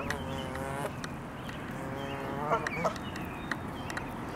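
Canada geese calling: a drawn-out, even-pitched adult call at the start and a second one in the middle that rises at its end, over faint high peeps from the goslings.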